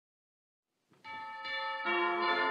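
Church bells begin ringing about a second in, out of silence, with another bell of a different pitch struck near the end.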